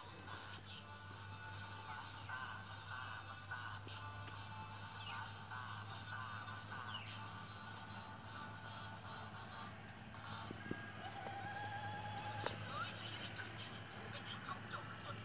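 Birds chirping, a short high call repeated about twice a second with a few falling whistles, over faint music and a low steady hum.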